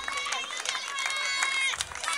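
Spectators at a running race finish line clapping and cheering the runners in, with several voices calling out over scattered handclaps.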